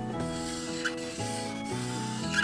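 Felt-tip marker rubbing back and forth on paper as it colours in, over background music whose chords change about every half second.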